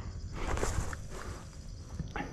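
Footsteps on a dry dirt hillside, with a louder stretch of scuffing about half a second in over a low steady rumble.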